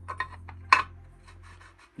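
A steel intermediate shaft is pushed into the newly sleeved bore of a Land Rover LT230 transfer case, making a few metal scrapes and clicks, the sharpest just under a second in. The shaft is a tight fit that won't go through by hand.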